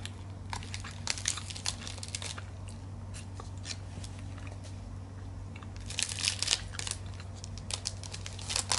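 Foil protein-bar wrapper crinkling in the hand in short crackles, a run during the first two seconds and again around six seconds in, over a low steady hum.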